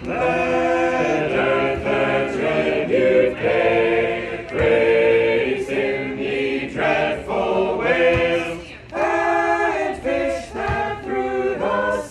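A choir singing a cappella in harmony, several voice parts moving together phrase by phrase, with a brief dip between phrases about eight and a half seconds in.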